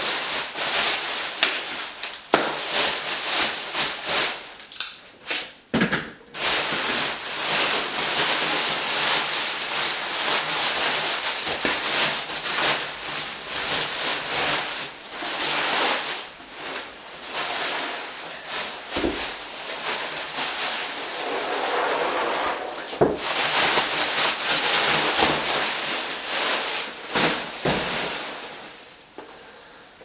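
Bubble wrap and packing tape being pulled and crumpled off a wooden subwoofer box: continuous loud crinkling and rustling of plastic, with a few knocks as the box is handled.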